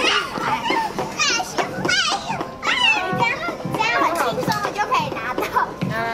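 Young children's high-pitched voices chattering and squealing playfully throughout, with music playing in the background.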